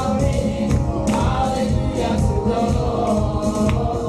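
Gospel praise song sung by women worship leaders into microphones, with voices joining in over a band's bass and percussion beat.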